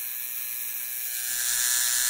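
Electric tattoo machine buzzing steadily as it works the needle into skin, getting louder in the second half.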